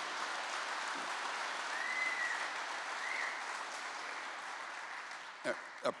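A live audience applauding: a steady spread of clapping that tapers off near the end.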